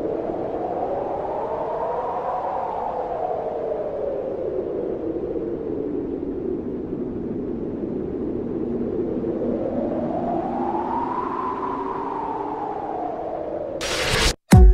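Electronic intro sound effect: a steady, noisy synthesizer swell whose pitch slowly rises and falls twice, peaking about two seconds in and again near the end.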